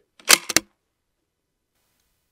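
Riflescope elevation turret being dialed down three clicks, one sharp click followed quickly by two lighter ones, taking three-tenths of a mil off the elevation after a shot that hit high.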